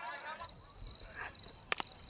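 A steady, high, pulsing chirp of insects in the background, with faint distant voices. Near the end comes one sharp crack of bat striking ball.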